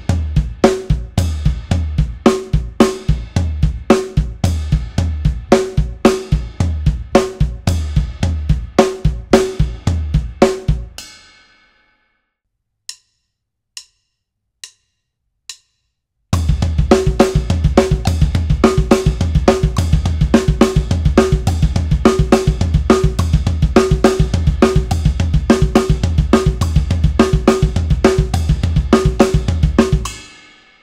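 Drum kit playing a hand-foot split pattern in 16th-note triplets: both hands strike together, the right on the ride cymbal and the left on the snare or floor tom, with the bass drum kicked between every hand stroke. The pattern stops about a third of the way in, four faint clicks count off, and it resumes at a faster tempo.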